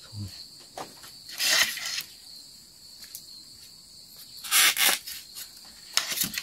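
Insects chirping steadily in the background, with two short rustling scrapes, about a second and a half in and again near five seconds, from hands handling fishing line and hooks.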